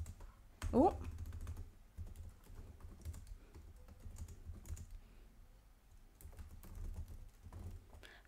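Typing on a computer keyboard: irregular, fairly soft key clicks.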